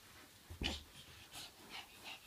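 A small child's breathy panting in short puffs, with a soft thump about half a second in.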